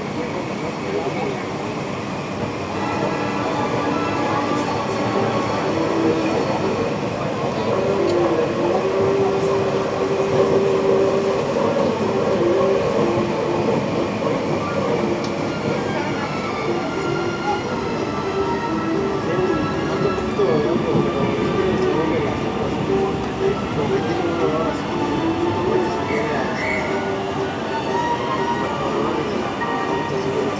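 Mexico City Metro Line 12 FE-10 train running, heard from inside the car: steady rolling noise of steel wheels on the rails, with a whine that shifts in pitch, as the train pulls alongside a station platform near the end.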